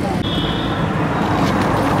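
Outdoor roadside din of traffic and the voices of a gathered crowd, with a brief high-pitched steady tone a little after the start that lasts about half a second.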